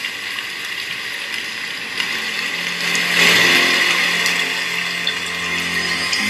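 Small speaker driven by a TDA7294 amplifier board giving out a loud steady hiss, with low sustained musical tones coming in about two and a half seconds in as music starts playing through it.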